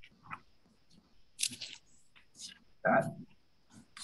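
A mostly quiet pause with a few short, faint breathy or rustling noises, then a voice saying a single word about three seconds in.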